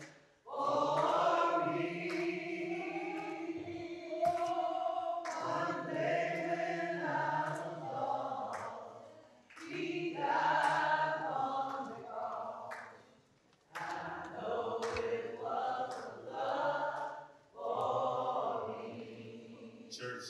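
A group of voices singing together in long held phrases, with brief pauses between them; the longest pause comes about 13 seconds in.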